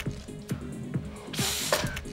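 Mamiya RB67 medium-format camera firing and winding: a single click about half a second in, then a louder, brief burst of mechanical clicking and ratcheting about a second and a half in, over background music.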